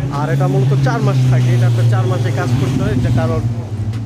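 A man talking over the steady low hum of a nearby motor vehicle engine running.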